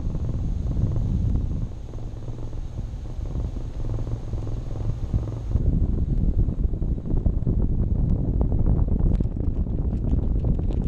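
Wind rushing over the microphone of a camera on a hang glider in flight: a loud, low, buffeting rumble. About halfway through the sound changes abruptly, and crackly gusts come in the second half.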